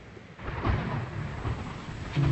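Outdoor ambience: a low rumble with irregular rustling noise, getting louder about half a second in.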